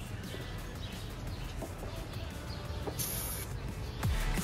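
Low steady background noise, broken about three seconds in by a short hiss from an aerosol spray can of clear varnish.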